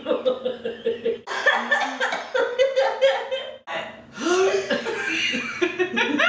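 Two women laughing hard, in loud breathless fits with no words, and a short pause about two thirds of the way through.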